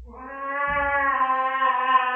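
Domestic cat giving one long, drawn-out yowl that grows louder, a protest at being given a spot-on flea pipette treatment.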